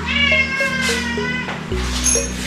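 A domestic cat gives one long meow, slightly falling at the end, asking for its kibble.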